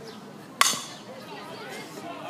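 A softball bat hitting a pitched ball: one sharp ping about half a second in that rings briefly, over background spectator chatter.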